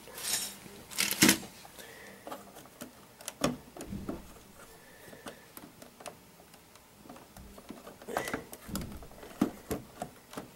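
Scattered plastic clicks and knocks of Lego pieces being handled on a string-driven elevator model, with a couple of louder knocks.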